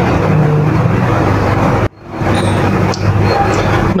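Steady, loud rushing background noise with a low hum underneath, dropping out abruptly for a moment about two seconds in and then coming back.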